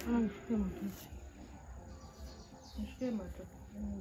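A person's voice: a few short, low-pitched syllables at the start and again about three seconds in, the words not made out.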